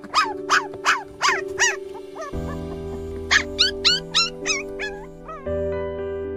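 Very young, still toothless puppies crying in quick high-pitched whimpers, about three a second, in two runs with a pause of about a second and a half between them; the cries of hungry pups. Background music plays underneath.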